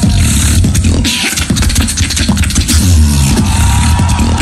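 Human beatboxing amplified through a microphone in a battle drop: a deep sustained bass with dense, rapid clicks and hissing high sounds over it, loud and unbroken.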